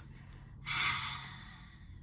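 A woman's long sigh, breathing out. It starts about half a second in and fades away over about a second.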